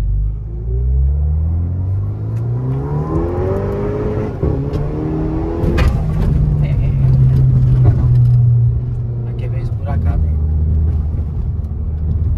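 Volkswagen Jetta TSI's turbocharged four-cylinder, breathing through a freshly fitted 3-inch stainless exhaust, heard from inside the cabin under hard acceleration. The engine note rises in pitch over the first few seconds, with a sharp crack about six seconds in, then holds a strong steady drone and eases off about ten seconds in.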